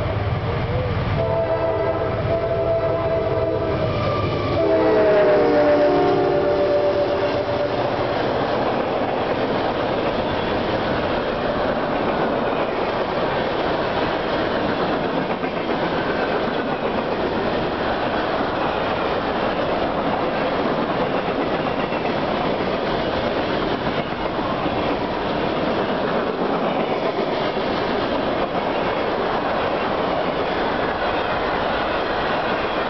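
Freight train locomotive horn sounding a chord that drops in pitch as the locomotive passes, about five seconds in, and fades by about eight seconds. After that come the steady rumble and clatter of freight cars rolling past.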